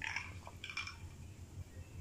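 A person swallowing a drink from a glass at close range, two short gulps in the first second.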